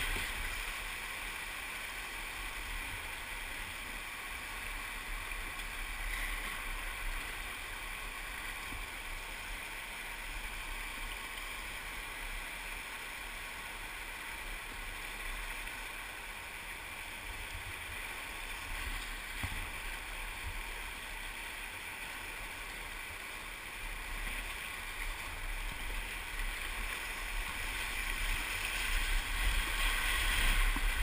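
River rapids rushing around a kayak: a steady wash of whitewater, growing louder over the last few seconds as the boat runs into breaking waves.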